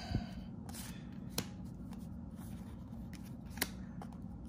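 Paper trading cards being flipped through by hand: faint sliding and rubbing of card stock against card stock, with two sharp ticks about a second and a half in and near the end. A low steady hum sits underneath.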